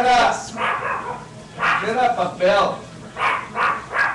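A dog barking and yipping in a quick series of short barks, with a brief lull about a second in.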